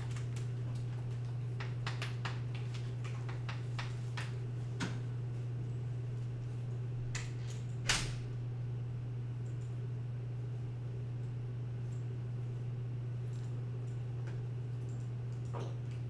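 A steady low hum, with scattered faint clicks and one louder click just before eight seconds in.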